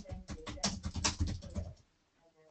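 Computer keyboard typing: a quick, irregular run of keystrokes that stops near the end.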